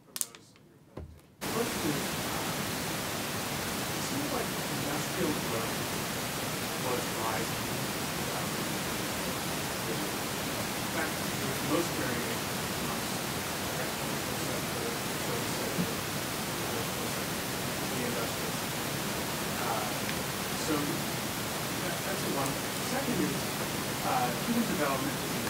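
A loud, steady hiss of recording noise switches on suddenly about a second and a half in. A faint voice, barely audible, talks beneath it.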